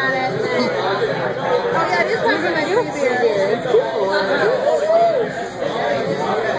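Several people talking and chattering over one another.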